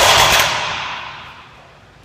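Heavily loaded deadlift barbell dropped to the floor from lockout: one loud crash of the plates hitting the ground, ringing out and fading over about a second and a half.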